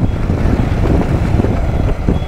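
Motorcycle engine running steadily while riding, heavily mixed with wind rushing over the microphone.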